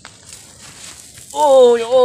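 Faint outdoor background noise, then a man starts speaking loudly about two-thirds of the way in.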